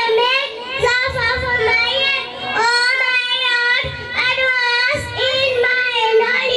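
A young child's high voice chanting an Islamic recitation in a sing-song melody into a microphone, in phrases of one to two seconds with short breath pauses.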